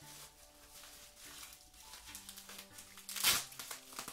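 Plastic bubble wrap crinkling as it is handled, with one louder, brief crinkle about three seconds in, over faint background music.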